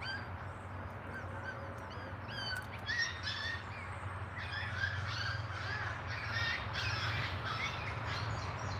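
Wild birds calling outdoors: scattered short chirps in the first half, becoming a busier run of calls from about halfway through, over a steady low hum.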